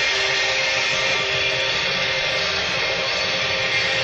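Live electric rock band playing a loud, dense, distorted passage with sustained guitar, captured by a concert recording.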